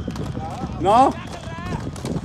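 Quad roller skate wheels rolling over rough asphalt: a steady low rumble with a quick clatter of small clicks.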